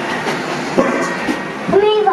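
A steady hiss with a couple of short knocks, then a person's voice starting near the end.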